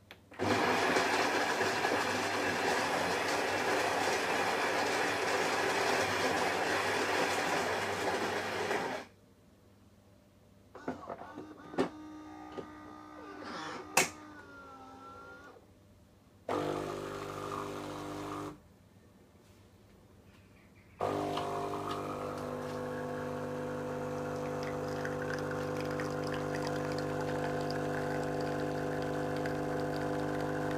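Gaggia Brera bean-to-cup espresso machine running one espresso cycle. For about the first nine seconds its built-in grinder grinds beans. Next come a few seconds of quieter clicks and whirring from the mechanism, then a short two-second burst of the pump, a pause, and for the last nine seconds or so the pump humming steadily as the espresso pours.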